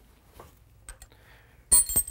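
A few faint clicks, then near the end one sharp metallic clink with a brief high ring: a metal tool on the clamp bolt of a globe valve as the bolt is loosened.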